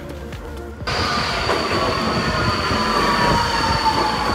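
Metro train moving along an underground station platform, with wheel and running noise, a steady high whine and a second whine that slowly falls in pitch as the train slows. It starts abruptly about a second in, after a brief quieter stretch.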